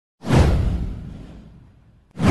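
A single cinematic whoosh sound effect with a deep low boom, kicking in sharply about a quarter second in, sweeping down in pitch and fading out over about a second and a half.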